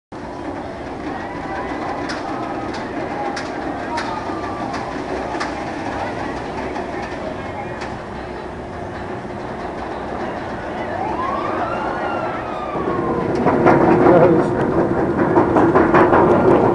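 Steel roller coaster train climbing its chain lift hill: a steady mechanical rumble with scattered clicks. Voices grow louder over it in the last few seconds.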